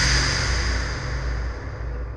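A swooshing transition sound effect over a low rumble, fading out steadily.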